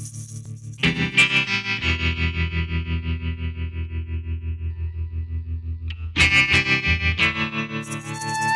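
Instrumental opening of a rock song: distorted electric guitar through effects, pulsing about four times a second over a sustained low bass note. Loud chords come in about a second in and again near six seconds.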